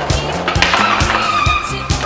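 Skateboard trucks grinding along a concrete ledge, a gritty scrape with a squealing tone starting about half a second in and lasting about a second and a half, over backing music with a steady beat.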